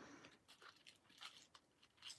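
Near silence with a few faint, scattered clicks and rustles of a hand handling jewelry on a felt cloth.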